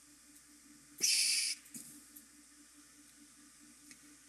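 Near silence, broken about a second in by one short, high hiss lasting about half a second.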